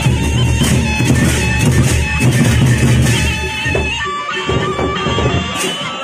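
Gendang beleq ensemble playing: big barrel drums and cymbals under a steady, reedy wind melody. About four seconds in the drums drop away, leaving the high melody.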